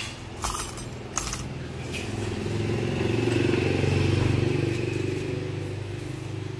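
A motor vehicle engine running steadily, swelling to its loudest about four seconds in and then easing off, with a few sharp metallic clinks of silver jewelry in the first two seconds.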